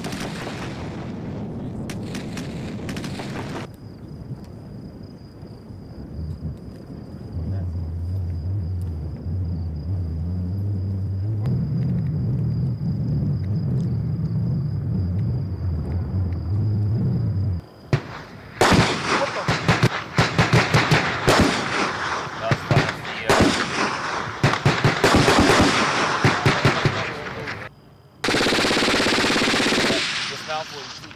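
Automatic rifle and machine-gun fire in bursts of rapid cracks, sparse at first and dense through the second half. A low rumble and a faint high whine fill the middle stretch between the volleys.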